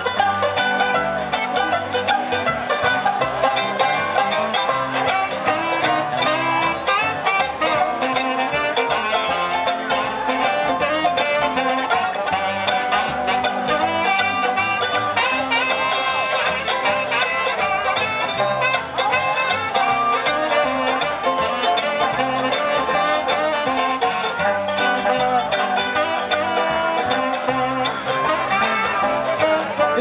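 Live acoustic bluegrass string band, guitar among the instruments, playing an instrumental break between sung verses at a steady level.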